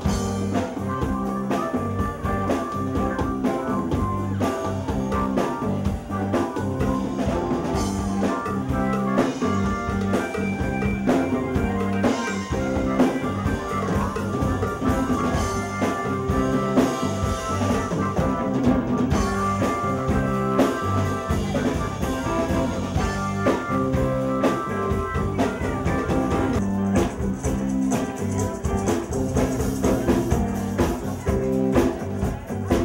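A band playing blues-rock, with electric guitar over a drum kit and no singing.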